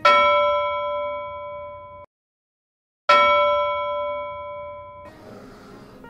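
A bell-like ding sound effect struck twice, about three seconds apart, each ringing out and fading. The first ring is cut off abruptly into a second of dead silence before the second strike.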